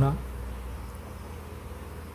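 A low, steady hum under a pause in speech, after the end of a spoken word at the very start.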